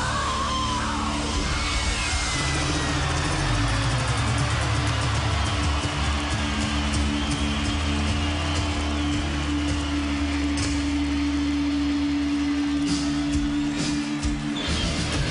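Live heavy rock band playing loud, with distorted electric guitars and drums driving steadily and a low note held through the second half.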